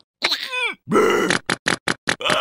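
Cartoon larva characters' wordless vocal sounds: a short call that falls in pitch about half a second in, then a grunt, followed by a few quick clicks near the end.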